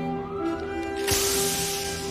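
Background music with held notes; about halfway through, a loud hiss of gas venting as a ribbed hose is pulled off its fitting on a fighter craft.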